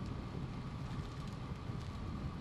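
Steady wind rush and vehicle road noise picked up from a moving vehicle pacing a line of racing cyclists, with a faint steady hum under it.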